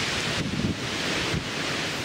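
Steady rushing noise of moving water in a walrus pool, mixed with wind on the microphone.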